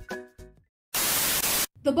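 A few notes of outro music fading out, a brief silence, then a loud burst of static hiss lasting under a second that cuts off suddenly, a TV-static transition effect. A woman's voice starts right after.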